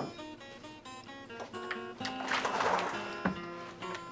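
Guitar music: plucked notes ring and change pitch step by step, with a fuller, denser stretch around the middle.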